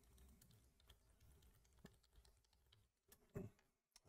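Faint keystrokes on a computer keyboard as a password is typed, with a short, slightly louder sound about three and a half seconds in.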